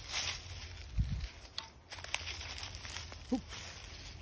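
Footsteps crunching and rustling through dry leaf litter, with scattered small crackles and a dull low thump about a second in.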